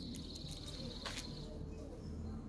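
Outdoor ambience: a high, fast-pulsing trill that stops a little past the middle, with one short sharp chirp about a second in, over a low steady hum.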